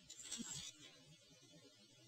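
Near silence: room tone, with a brief faint hiss in the first second.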